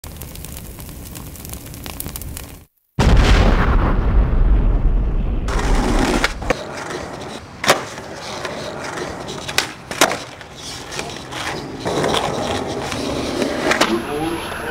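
Skateboard wheels rolling loudly over concrete pavement, broken by a few sharp clacks of the board striking the ground.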